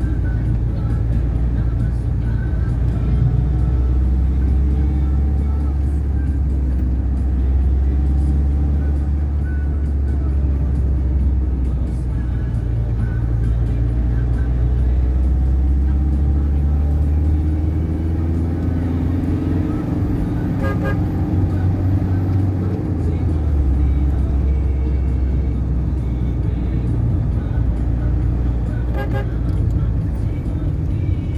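Steady low engine and road rumble inside a moving vehicle's cabin, with a car horn sounding now and then in the surrounding traffic.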